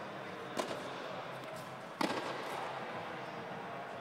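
Tennis ball struck during a rally: two sharp knocks about a second and a half apart, the second louder, each ringing briefly in the large indoor court, over a steady background hiss.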